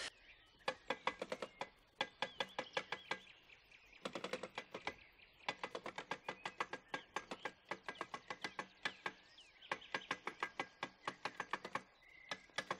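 Rapid mechanical clicking in quick irregular runs, each run several clicks long, with short pauses between runs.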